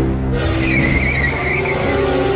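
Car tyres screeching as a car brakes hard and skids: a high, steady squeal that starts about half a second in and lasts more than a second.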